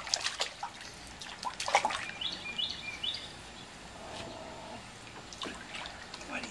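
Water splashing and sloshing in a shallow plastic kiddie pool as a dog and a baby move about in it, in short irregular splashes. A bird chirps three short notes in the background about two seconds in.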